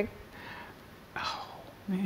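A quiet pause in a conversation, then a short breathy, whisper-like vocal sound a little over a second in, and a voice starting again near the end.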